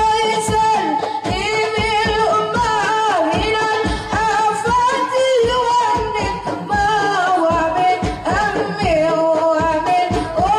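Women's voices singing Islamic sholawat in Arabic through microphones, with long, drawn-out notes that waver in pitch. One woman leads, with the group singing along.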